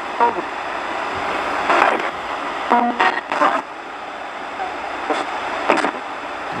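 RadioShack 20-125 AM/FM/shortwave radio used as a ghost box, sweeping continuously through stations: a steady static hiss broken about six times by brief, chopped fragments of broadcast voices.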